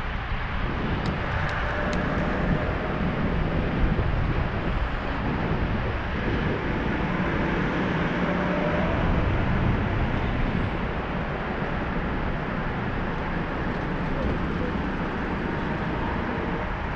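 Wind rumbling on an action camera's microphone during a bicycle ride, over steady tyre, road and city-traffic noise. Three faint ticks come about a second in.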